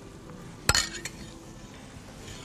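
A metal spoon clinks once against cookware while baked chickpeas are spooned from a pot onto a plate, a single sharp click about two-thirds of a second in.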